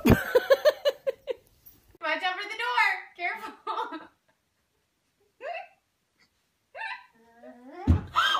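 A young child's voice: a quick run of short, choppy vocal sounds in the first second, then high-pitched wordless vocalizing, and a few brief calls later on.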